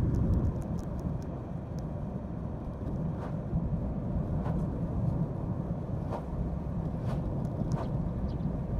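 Steady low rumble of a car travelling along a road, heard from inside the moving car, with a few faint clicks.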